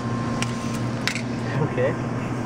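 A few light clicks and taps of a plastic milkshake cup being handled, over a steady low electrical hum.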